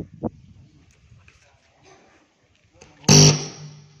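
Podium microphone sounding through the public-address loudspeakers: a loud burst about three seconds in that rings on with a low hum as it fades.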